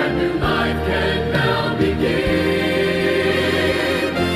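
A choir singing a Christian meditation song over sustained instrumental accompaniment.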